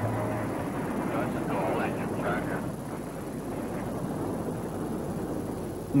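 Rocket engines at lift-off: a steady rushing noise of the launch, easing slightly in the second half.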